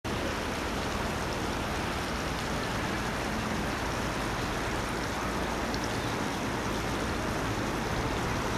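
A steady rushing outdoor noise, even throughout, with no distinct events in it.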